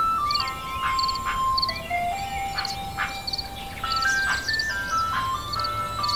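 Ice cream van chime playing a simple melody of single clear notes that step up and down, announcing the ice cream seller's arrival.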